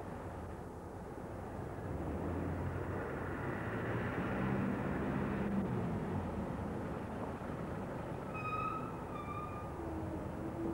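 DAF 2800 lorry's diesel engine running slowly as it hauls a heavy low-loader, a low rumble that grows louder a couple of seconds in and eases again, with street traffic around it. Two short high chirps near the end.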